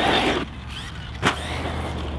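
Team Magic SETH electric desert buggy on 6S driving over dirt: a burst of tyres spraying dirt at the start, then quieter running as it moves away, with one sharp knock a little over a second in.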